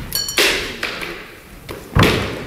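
Backsword blades clash once just after the start with a short metallic ring, followed by a brief rush of noise. Near the end there is a sharp, heavy thump as a fencer's lunging foot lands on the wooden floor.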